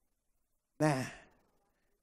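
A man's voice through a microphone: a pause, then one short spoken word about a second in, falling in pitch and trailing off.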